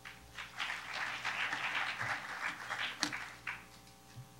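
Audience applauding, dying away about three and a half seconds in.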